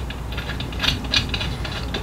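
Small irregular metallic clicks and scrapes as a spark plug is turned by hand into the finned cylinder head of a small two-stroke engine.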